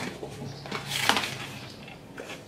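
A cardboard product box handled in the hands: a few light taps and scuffs, the clearest about a second in.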